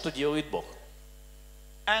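A man speaking into a microphone in a sermon, with a pause of about a second in the middle where only a faint steady hum is heard. Speech resumes near the end.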